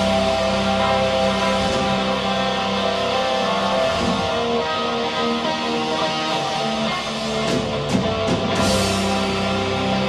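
Live rock band playing: electric guitars holding long sustained notes over bass and drums, with a cymbal swell about eight and a half seconds in.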